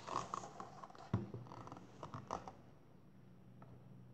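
Paper picture book being handled and lifted: rustling pages and a few light knocks, with one sharper thump just over a second in, dying out after about two and a half seconds. A low steady hum runs underneath.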